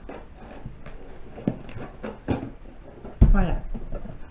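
A large flat cardboard box being handled and moved away, with a few light knocks and scrapes and one heavy thump a little after three seconds in.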